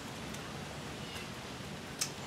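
Quiet, steady hiss of outdoor background noise, even throughout with no distinct sounds in it.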